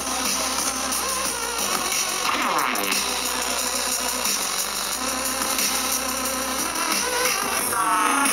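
Live electronic bass music played loud through a festival sound system and heard from among the crowd. A heavy bass pulses on and off, with a synth sweep about two and a half seconds in.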